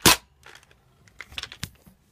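A toy foam-dart blaster fires once with a single sharp, loud pop, followed by a few light clicks and knocks of handling.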